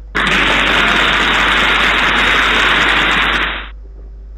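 Game sound effect: a loud, even noise that starts suddenly and stops after about three and a half seconds, marking the three-second answer time.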